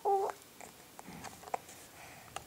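A baby's short, high-pitched vocal sound right at the start, followed by a few faint clicks and taps as his mouth and hands touch a plastic toy mirror.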